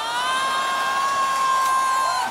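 A long, held whoop that rises at the start and then holds one steady high pitch, over a crowd cheering.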